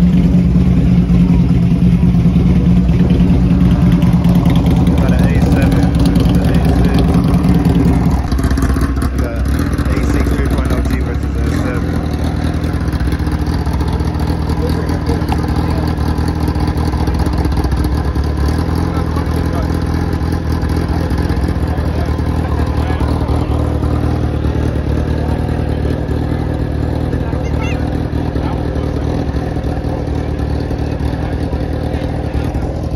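Two cars' engines running steadily, held at raised revs while staged side by side for a drag launch. A strong held tone drops away about eight seconds in, and the engines settle to a lower, steady note. Crowd chatter sits over the engines.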